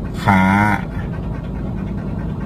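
Steady low rumble of a car on the move, heard from inside the cabin. A man's voice draws out one syllable near the start.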